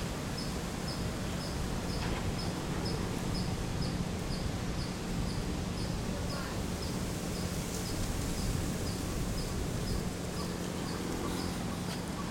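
An insect chirping steadily, a short high chirp repeating evenly about twice a second, over a steady low hum and outdoor background noise.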